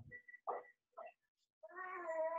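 A cat meowing: one long, drawn-out call that begins near the end, after a few short faint sounds.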